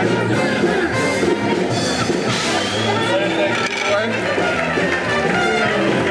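Jazzy band music with brass, trumpet-like, playing steadily over the talk of a crowd.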